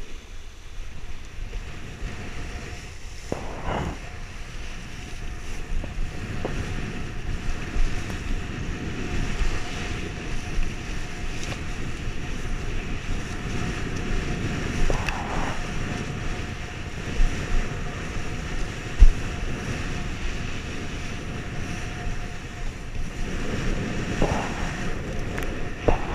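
Wind buffeting the microphone of a camera on a kitesurfer's rig, over the rush and splash of a kiteboard planing across choppy sea water. The splashing swells louder about 4 s in and again around 15 s, and a faint steady tone runs underneath.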